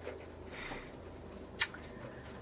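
Quiet car cabin with a low steady hum, broken by one short, sharp click about a second and a half in.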